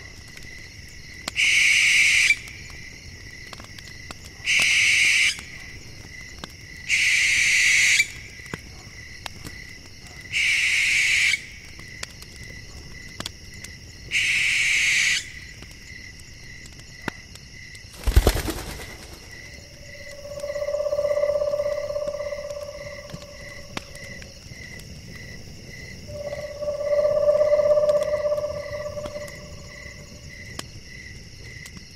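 Night ambience of crickets chirping steadily, broken by five harsh owl screeches of about a second each over the first half. A sharp crack with a low thud follows, then two long, low calls of about three seconds each.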